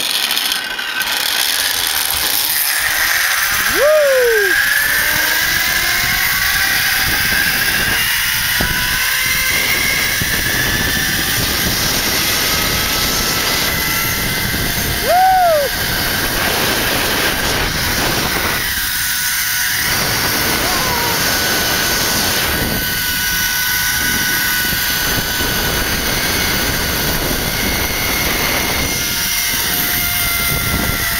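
Zip-line trolley pulleys running fast along the steel cable with a steady whirring whine that climbs in pitch over the first few seconds as the rider gathers speed, mixed with wind rushing over the microphone. A brief higher sound comes twice, about four and fifteen seconds in.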